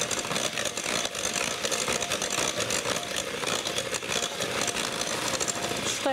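Electric hand mixer running steadily, its twin beaters whisking an oil, sugar and egg batter in a glass bowl.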